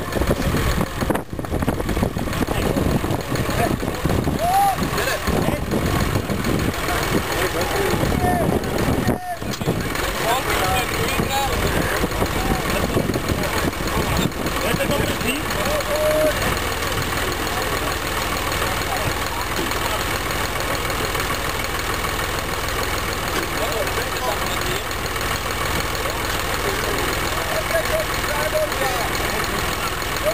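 Voices of a crowd of onlookers talking and calling out over the steady idle of a tractor engine. The idle is clearest in the second half.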